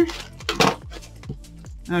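Scissors cutting through a plastic poly mailer: one short rustling snip about half a second in, with a few faint plastic ticks after it, over quiet background music.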